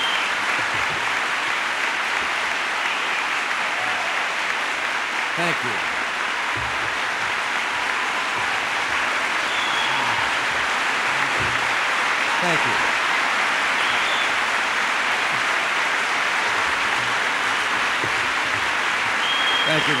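Audience applauding steadily, a sustained ovation with no break.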